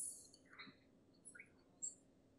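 Near silence with faint, distant speech: a few short, hissy fragments of a voice, over a faint steady low hum.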